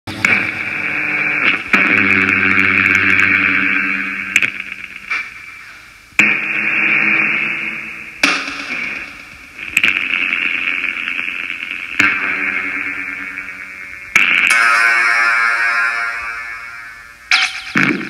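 Electronic synthesizer intro played on iPad synth apps (SKIID and Apolyvoks): harsh, static-like distorted synth swells that start suddenly and fade away, repeating every two seconds or so.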